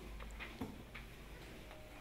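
Quiet room tone with low hum and a few faint, scattered clicks and taps.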